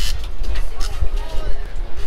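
Wind rumbling and buffeting on an action camera's microphone out on open water, with faint, indistinct voices underneath.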